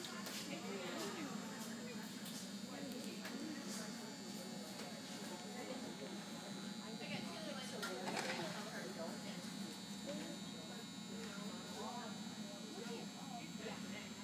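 Indistinct voices talking in the background over a steady high-pitched buzz.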